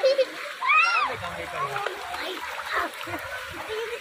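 Children talking and calling out while splashing in shallow water, with one child's high voice rising and falling about a second in.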